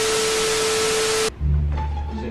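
TV static hiss with a single steady tone through it, lasting a little over a second and cutting off suddenly, followed by music with a deep bass line.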